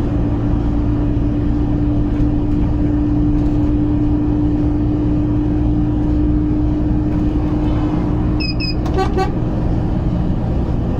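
Heavy truck's engine and road noise heard inside the cab: a steady low drone with a steady hum over it that fades near the end. Near the end come a few short, high electronic beeps.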